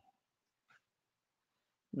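Near silence: a pause between a man's words on a headset microphone, with his speech starting again right at the end.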